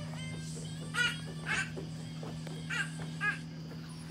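Crows cawing: two pairs of short calls over a steady low hum.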